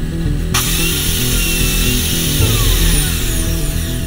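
Loud intro music with power-tool sound effects mixed in. A hissing layer comes in suddenly about half a second in, and a falling glide in pitch is heard near the end.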